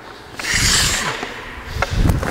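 Hockey skate blades scraping on the ice as the skater pushes off and turns, a hiss that swells about half a second in and fades, followed by a couple of light clicks near the end.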